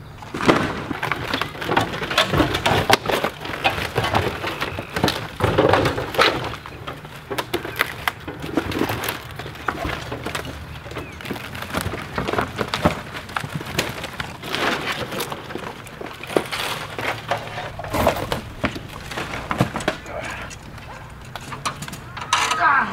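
Clatter of camper demolition debris, wood cracking and splintering and sheet metal knocking, as pieces are torn off and thrown onto a pile. Many sharp knocks follow one another irregularly throughout.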